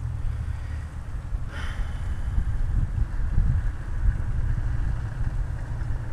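Wind buffeting the camera microphone outdoors: a steady, uneven low rumble.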